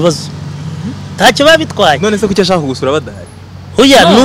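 A man speaking in short phrases with a pause in the middle, over a steady low background hum.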